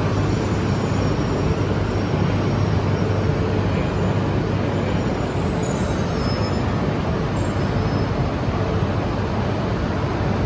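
Steady low hum and even rushing noise of Shinkansen trains standing at the platform, without any sudden clunk.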